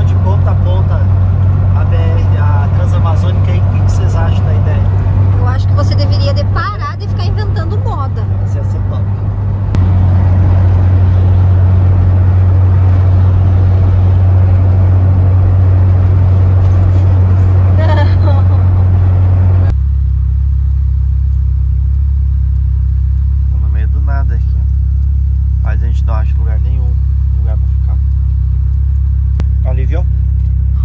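VW Kombi van engine droning steadily, heard from inside the cabin, with faint voices over it. About 20 s in, the sound cuts to a lower, steady hum.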